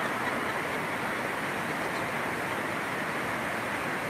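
Steady, even hiss of background noise in a large hall, with no other distinct event.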